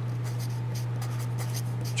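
Felt-tip marker writing on paper in a quick series of short strokes, over a steady low electrical hum.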